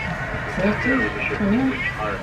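Indistinct speech: a voice rising and falling in pitch in short phrases, with no words the recogniser could make out.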